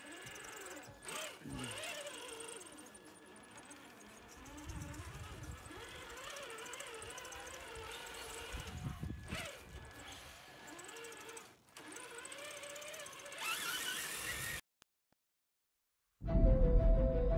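Electric motor and drivetrain of a Traxxas TRX-4 K5 Blazer RC crawler whining faintly, the pitch wandering up and down with the throttle. A short laugh about two seconds in, two low rumbles around five and nine seconds in, and the sound cuts off a little before the end.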